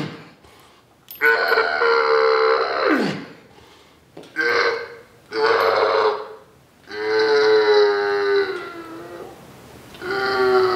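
A man's loud, drawn-out grunting yells as he exhales on the effort of cable triceps pushdown reps, put on in an exaggerated way. There are four strained cries, the first dropping in pitch as it ends and the last trailing off quietly.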